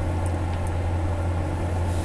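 A steady low hum with a faint hiss above it, unbroken and unchanging.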